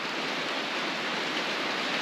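Steady rain on a barn roof, heard from inside as an even hiss.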